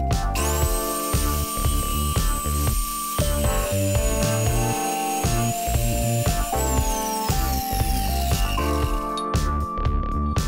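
An angle grinder with a cut-off disc cuts through a bicycle crank arm clamped in a vise, making a high, steady whine with a hiss, under loud background music. Near the end the whine falls in pitch and fades as the grinder winds down.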